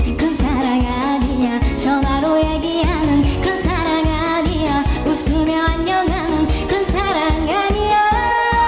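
A woman singing a pop song live into a handheld microphone over a recorded backing track, her voice bending and wavering on held notes above a steady beat.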